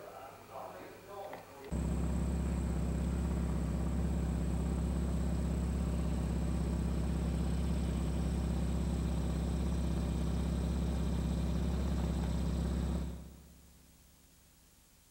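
Brief voices at the start, then after a sudden cut a loud, steady low hum that holds one pitch, with a thin high whine above it. It fades out about a second before the end.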